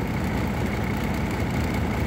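Diesel truck engine idling steadily, heard from inside the cab as an even rumble.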